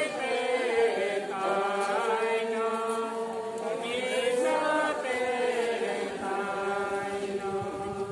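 A group of voices singing a slow song together, with long held notes that glide from one pitch to the next.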